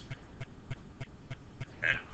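Several faint, light clicks, a few per second, as keys are entered on an on-screen TI-84 Plus C graphing calculator.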